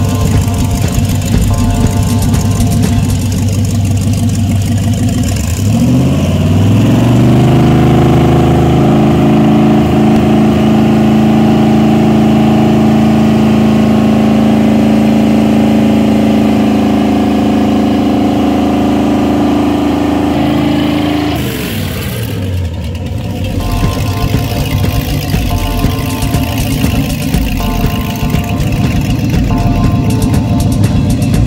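Freshly rebuilt Volvo Penta 5.7 V8 marine engine running on a test stand. It idles, revs up about five seconds in, holds the higher speed, then drops back to idle just after twenty seconds.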